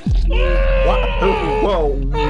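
Several men laughing hard, with groaning and screaming voices that swoop up and down in pitch. Beneath them, a deep tone falls sharply at the start and then holds as a steady low rumble, typical of an edited-in bass-drop effect.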